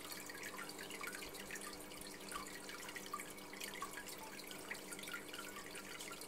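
Water trickling and dripping into an aquarium: a continuous patter of small, irregular splashes, over a steady low hum.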